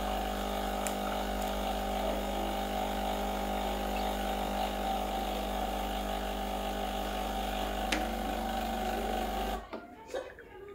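Breville Oracle espresso machine's pump running a blank double shot through the group head into the cup: a steady buzzing hum that cuts off suddenly near the end as the shot finishes. The blank shot warms up the machine, the handle and the cup.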